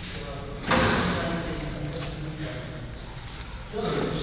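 A sudden slam about two-thirds of a second in, followed by a noise that fades away over the next few seconds in a tiled restroom.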